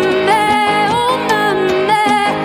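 Female singer with a live country-indie band: long held vocal notes with slides between them over electric and acoustic guitar accompaniment.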